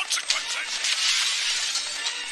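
Film sound effects of glass shattering, with a crackle of breaking debris that is densest about a second in.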